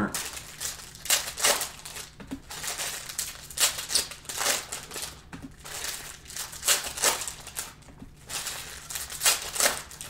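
Foil trading-card pack wrappers crinkling and crackling as they are torn open and handled, with cards being laid down on a table, in irregular short snaps.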